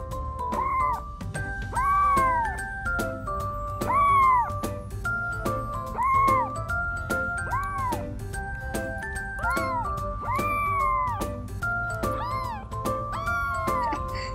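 A young kitten meowing over and over: about ten short calls, each rising and then falling in pitch. Light background music plays underneath.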